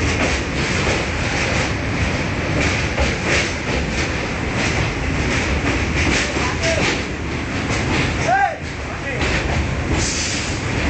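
A train's wheels rumbling and clacking over the rail joints, heard from inside a carriage as it runs over a sea bridge. A short rising-and-falling squeak comes about eight seconds in.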